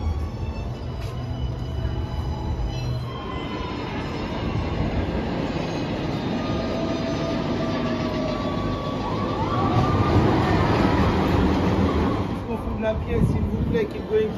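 A train running on steel rails, a rumble that builds after a few seconds, with squealing wheel glides about nine to twelve seconds in. Eerie music fades out in the first few seconds.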